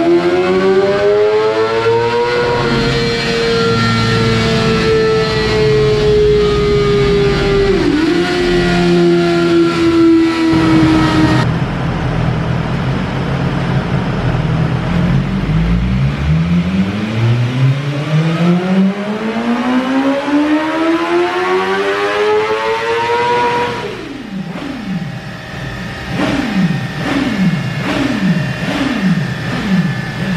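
2020 BMW S1000RR's inline-four engine with its stock exhaust, run at full throttle on a dynamometer in fifth gear. The pitch climbs to high revs and holds there for several seconds; after a cut, a second pull climbs again. Near the end the revs fall away in a series of short drops.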